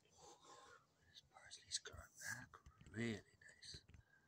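Quiet whispered, muttered speech, with a brief voiced murmur about three seconds in.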